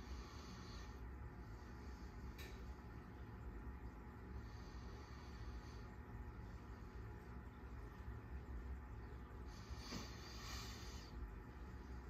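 Quiet room tone: a faint steady low hum, with soft hiss now and then and a small click a couple of seconds in.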